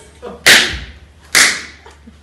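Three sharp handclaps about a second apart, each ringing briefly in a large room.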